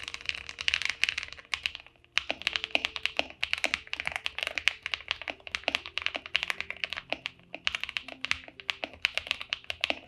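Fast typing on an Akko ACR Top 75 mechanical keyboard with a frosted acrylic case and linear Akko CS Silver switches: a dense run of keystrokes, a short pause about two seconds in, then steady typing again.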